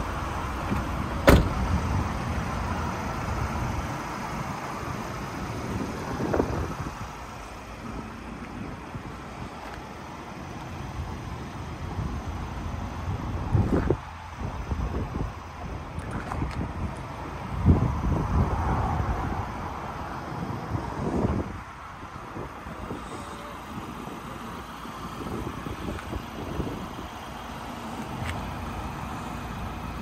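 Steady outdoor rumble around a parked van, with a sharp bang about a second in and several duller thumps later.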